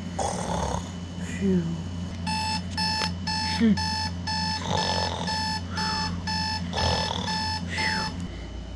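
Electronic alarm clock beeping: a rapid, steady run of short, even beeps that starts about two seconds in and keeps going, sounding for a sleeper to wake up.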